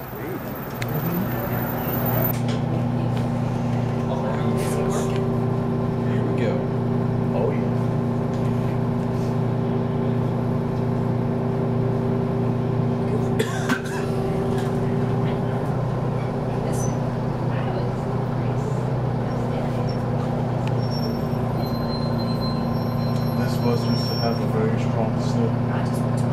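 Detroit Diesel 6V92 two-stroke V6 diesel of a 1991 Orion I transit bus running steadily at an even engine speed, heard from inside the passenger cabin. A single sharp clack comes about halfway through.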